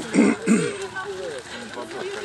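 A man clearing his throat in two short, loud bursts near the start, followed by quieter talking.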